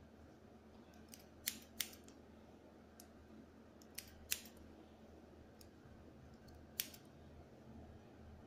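Hair-cutting scissors snipping through hair: a few sharp snips, two quick pairs in the first half and a single one near the end, over a faint steady hum.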